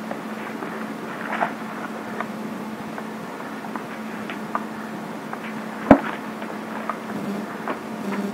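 Scattered light clicks and soft rustles of Bible pages being turned and handled, over a steady low hum, with one sharper click about six seconds in.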